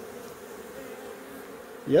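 A swarm of Africanized honey bees buzzing in a steady, even hum as the swarm crowds into a hive box.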